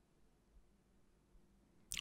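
Near silence: faint room tone, with a man's voice just starting at the very end.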